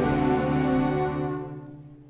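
Youth orchestra, mostly strings, playing a sustained chord that fades away over the second half, as at the end of a phrase.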